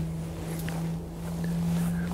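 A steady low hum with wind rumbling on the microphone.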